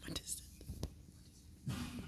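Audience members whispering close to the microphone, with a few small clicks and rustles.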